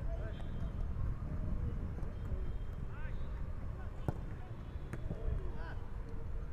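Footballs being struck in a shooting drill: a few sharp thuds, the clearest two about four and five seconds in, over players' distant calls and a steady low rumble.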